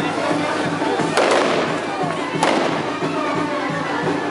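Fireworks going off: two sharp bangs about a second and a quarter apart, the first followed by a short spray of crackling hiss. Band music and crowd voices continue underneath.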